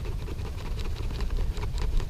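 Faint rustling and small clicks of a helmet's fabric chin strap and Fidlock magnetic buckle being handled, under a steady low rumble.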